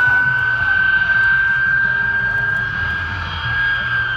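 De Havilland Vampire jet's Goblin turbojet flying past with a steady, high-pitched whine over a low rumble; the pitch rises slightly, then starts to fall near the end.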